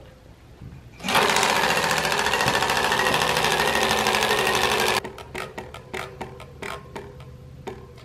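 Plastic clicker flicking against the knobbed tyre of a spinning 26-inch bicycle-wheel prize wheel. A fast, even rattle of clicks starts about a second in and breaks off suddenly about five seconds in, giving way to scattered separate clicks as the wheel comes to rest.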